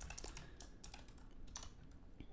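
Faint typing on a computer keyboard: a string of irregularly spaced keystrokes.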